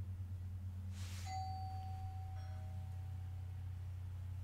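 A brief hiss about a second in, then a single bell-like chime that rings out and slowly fades, over a steady low hum.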